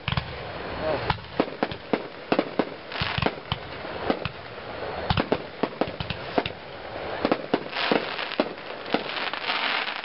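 Consumer aerial firework shells bursting overhead: a long, irregular string of sharp bangs, with thicker stretches of crackling about three, eight and nine-and-a-half seconds in.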